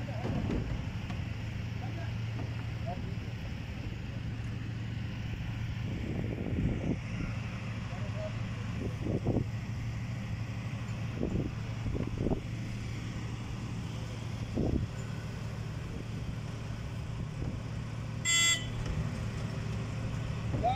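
Mobile crane's diesel engine running steadily through a tank lift, with a few brief knocks and voices, and a short high-pitched toot near the end.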